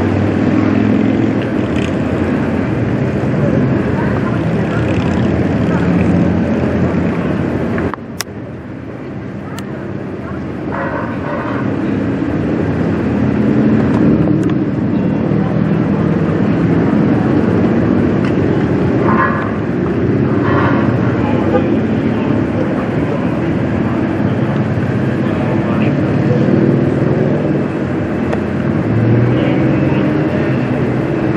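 A fire engine's motor running at high revs to drive its water pump, a loud steady drone. About eight seconds in it drops off suddenly, then climbs back up over the next several seconds.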